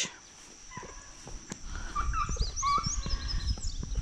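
Birds chirping in a quick run of short rising notes through the middle, over a steady high-pitched whine and a low rumble.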